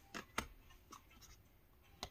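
Tarot cards being handled and laid down on a pile: two light taps near the start, then soft card-on-card rustling.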